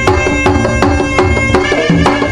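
Sundanese pencak music: a tarompet, a double-reed shawm, playing a melody in held notes over steady strokes of kendang hand drums.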